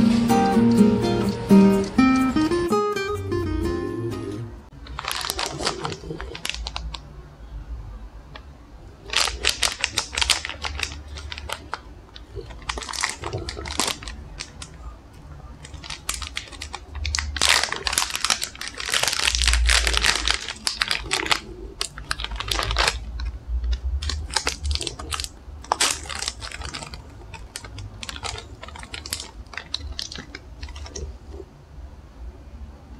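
Acoustic guitar music for the first few seconds, then the crinkling and rustling of plastic dog-treat packets being opened and handled, in irregular bursts.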